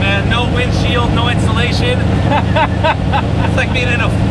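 Twin-turbocharged 572 cubic-inch Chrysler Hemi V8 idling steadily with a low rumble, heard from inside the stationary car's cabin under a man's laughing, excited talk.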